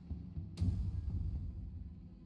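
Horror slot game's dark soundtrack: a low, throbbing drone, with a sudden sound-effect hit about half a second in that slowly fades.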